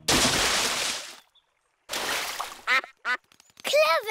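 Big cartoon splash of a body falling into a duck pond, lasting about a second, followed after a brief silence by a second shorter burst of water noise and then ducks quacking a few times near the end.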